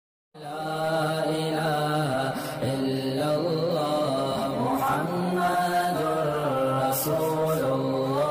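A man's voice chanting a slow melodic line with long held notes that waver and glide, starting just after the beginning.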